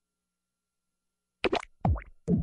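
Stylised sound-effect hits from a pill-taking montage: two short, sharp hits in quick succession, starting about a second and a half in.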